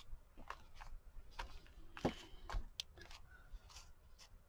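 Faint rustling and light clicks of hands pressing and smoothing glued doily lace onto a paper journal page, with one sharper tap about halfway through.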